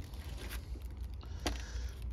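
Faint handling sounds: a thin plastic plant bag being lightly rustled on a metal bench, with one sharp tick about one and a half seconds in, over a low steady rumble.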